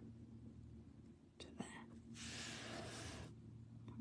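Quiet room with a steady low hum; a soft breathy hiss lasts about a second past the middle, after a couple of softly spoken words.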